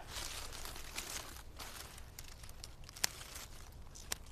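Dry, leathery Epimedium leaves rustling and crinkling as old foliage is cut back close to the ground, with a few light clicks and one sharp click about three seconds in.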